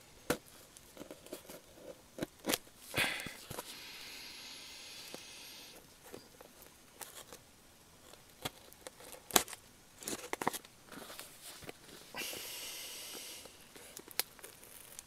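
Hands handling small plastic objects and packaging: scattered light clicks and knocks, with one sharp knock about nine seconds in, and two rustling, tearing stretches of two or three seconds each, the first a few seconds in and the second near the end.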